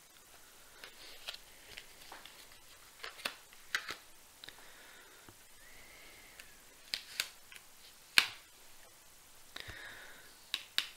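Tarot cards being handled and laid out: a scatter of light clicks and flicks of card stock, with a few sharper ones about three seconds in and again near the end.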